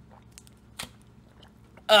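A man's mouth clicking faintly as he tastes a soda after big gulps, then a loud "ah" with falling pitch near the end.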